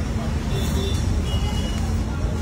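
Busy street background: a steady low rumble of road traffic with indistinct voices.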